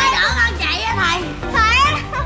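Children's high-pitched voices calling out over background music with a steady bass line.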